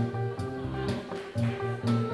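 Electric guitar and electric bass playing an instrumental piece live, with no vocals. The bass moves through a repeating figure of held low notes under sustained guitar lines, with notes struck on a steady beat about twice a second.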